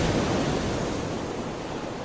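A steady rushing hiss, like surf, fading out gradually as the closing sound of the outro.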